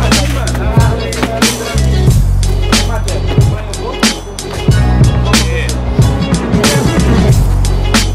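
Background music: a track with a steady drum beat and heavy bass, with a melodic line gliding up and down over it.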